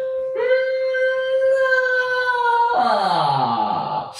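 A singer holds a steady, high hummed note, then about two and a half seconds in opens into a fuller, rougher vowel that slides down in pitch. This is the 'n'-to-'ga' mixed-voice exercise, which moves from a light head-voice hum to a vowel to find a middle balance between head and chest voice.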